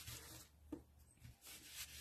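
Near silence, with a faint rustle and one soft tap of card stock being pressed flat by hand.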